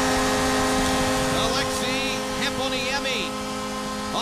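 Arena goal horn sounding a steady multi-tone blast over a cheering crowd, marking a home-team goal.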